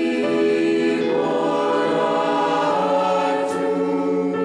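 Choir singing a slow sacred piece in long held chords that shift to new notes a few times.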